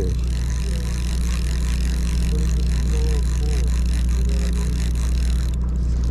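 Steady low drone of the sportfishing boat's engine running, with a constant hiss of wind and water over it.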